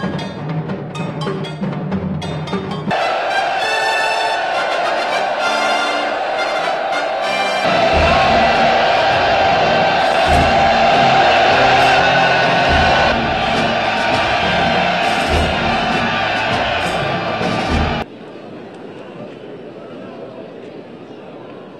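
Orchestral film score. It opens with a driving drum rhythm, and about three seconds in a loud brass fanfare over full orchestra enters, with heavy timpani strokes every second or two. The music cuts off abruptly near the end, leaving a much quieter steady noise.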